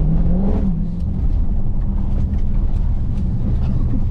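Dodge Charger Hellcat's supercharged V8 heard from inside the cabin while driving: a steady low drone that rises briefly in pitch about half a second in, over road noise.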